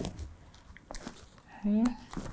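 Small scissors picked up off the cutting mat and brought in to clip a thread: a few faint, light clicks and handling sounds.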